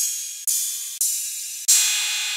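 808-style drum-machine cymbal samples auditioned one after another, each a bright, hissy cymbal hit that fades and is cut off short as the next starts. Three new hits come in, about half a second, one second and just under two seconds in.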